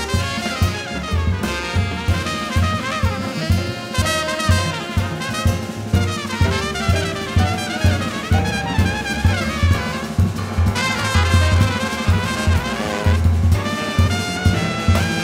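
Live jazz quintet playing: a trumpet solos in quick, winding runs over piano, upright bass and drum kit, which keep a steady beat.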